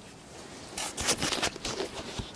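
Handling noise from the removed metal engine oil cooler being picked up off a shop towel on cardboard: a quick run of rustling scrapes about a second in.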